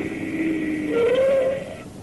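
A steady engine-like hum that fades away, with a short wavering tone about a second in.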